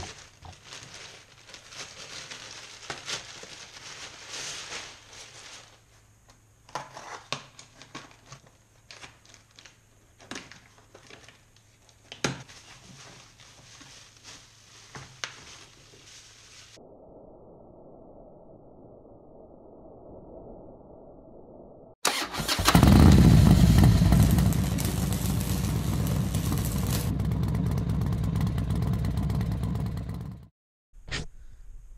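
Plastic mailing bag and bubble wrap rustling and crinkling in the hands as parcels are unwrapped, with scattered sharp crackles. After a muffled stretch, a motorcycle engine starts suddenly and loudly about two-thirds of the way through, then settles into a steady run.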